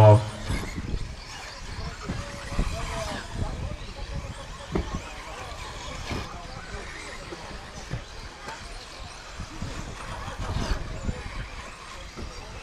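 Electric 1:10-scale four-wheel-drive RC buggies racing around a dirt track, their motors whining faintly over a low rumble and indistinct background voices.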